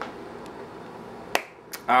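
Two sharp clicks, a little under half a second apart, about a second and a half in, over faint room noise.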